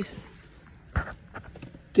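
A single soft knock about a second in, followed by a few faint clicks.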